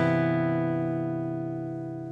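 A guitar chord left ringing after a last strum, its tones dying away evenly with nothing played over it.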